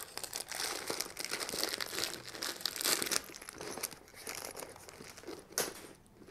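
Crinkly rustling of a Magpul DAKA tool pouch as hands rummage through it and move the tools inside, with many small clicks and a brief louder rustle near the end.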